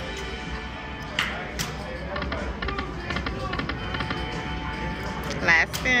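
Casino floor din: electronic slot machine music and chimes over background chatter, with a short louder burst of machine sound with a wavering pitch about five and a half seconds in.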